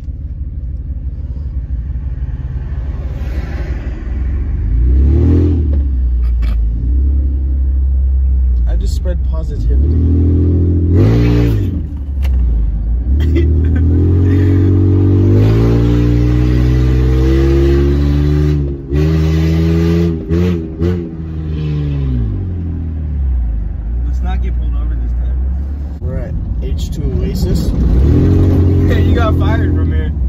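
Old minivan's engine heard from inside the cabin while driving, a steady low rumble with the engine note climbing and dropping several times as it accelerates and shifts gears.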